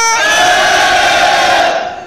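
A large auditorium audience yelling 'ah!' together in one loud, sustained shout, answering a man's held shout that ends just as theirs begins. The crowd's yell stops sharply about a second and a half in and trails off.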